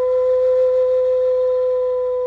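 A wooden end-blown flute holding one long, steady note.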